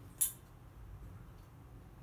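A crow's beak striking a stainless steel food bowl once: a single sharp metallic clink about a quarter second in, as it picks food from the bowl.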